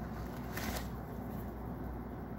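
Paper rustling and crinkling as a paper gift bag and its tissue paper are handled, loudest in a burst just under a second in, then fainter.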